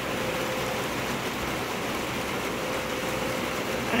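Steady rain falling, heard as an even hiss, with a faint steady hum now and then.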